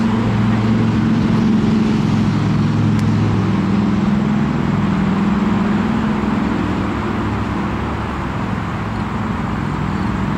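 A steady, engine-like low drone, such as a motor vehicle running, with its pitch drifting slightly up and down.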